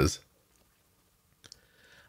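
A man's spoken word trailing off, then a pause in near silence broken by a couple of faint, short clicks about one and a half seconds in.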